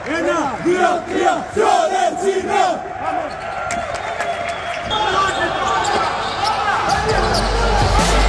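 A group of basketball players shouting together in a huddle, many voices overlapping. After a few seconds the shouting gives way to quieter hall chatter, and music with a heavy bass comes in near the end.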